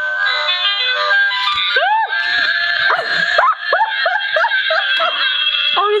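Two novelty musical Santa hats switched on together, playing a tune. About two seconds in, women's shrieks and laughter of surprise break out over the music.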